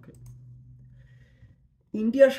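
A pause in a man's talk: a faint low hum and a few soft clicks, then a moment of dead silence before his voice comes back at the very end.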